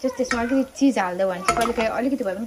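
Cookware clatter on a gas stove: a frying pan and a utensil knocking, with a sharper knock about one and a half seconds in, under a voice that is louder than the clatter.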